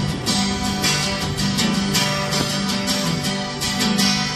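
Acoustic guitar strumming the instrumental intro to a song, a steady run of strummed chords.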